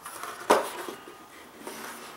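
Cardboard lid of a tablet box being put back on its base: a sharp knock about half a second in as it meets the box, then soft rustling and sliding as it is pushed down into place.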